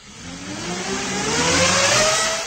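A motor spooling up as a propeller spins: a whine rising steadily in pitch over a rushing noise, growing louder throughout.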